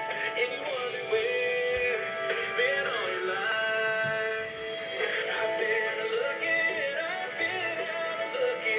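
A song with singing playing from an FM radio station's broadcast, with held, stepping vocal and instrumental notes throughout.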